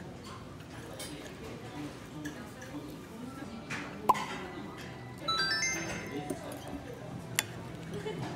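A quick rising run of chime notes just after five seconds and a sharp ping about four seconds in, added sound effects, over a low murmur of background voices; a metal spoon clinks on the plate near the end.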